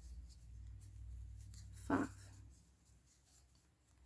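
Faint rustling and scratching of cotton yarn being worked with a small metal crochet hook as double crochet stitches are made, stopping about two and a half seconds in.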